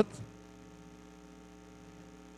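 Faint, steady electrical mains hum with a stack of even overtones, running unchanged through a pause in the speech.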